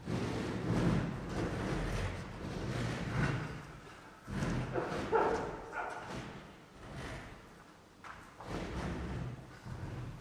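Stage noise as musicians move about and reset: footsteps and thuds of chairs and music stands, in uneven bursts, loudest about halfway through.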